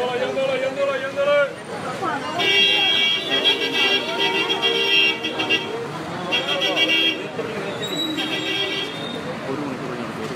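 Voices of a street crowd with vehicle horns honking in traffic. There is one long honk lasting about three seconds from about two seconds in, then two short honks later on.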